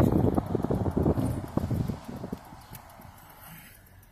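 Low rumble and irregular low thumps from a car being driven, dying away about halfway through to a faint, even background noise.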